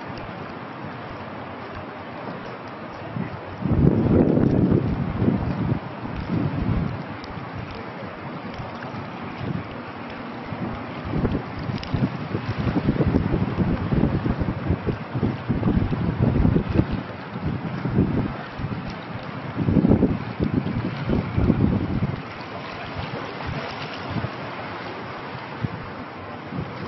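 Wind buffeting the camera microphone in irregular low gusts, loudest about four seconds in and again around twenty seconds, over a steady outdoor hiss.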